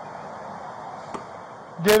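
Steady outdoor background noise picked up by a police body-worn camera, with a faint click about a second in, ending on a man shouting "Get in".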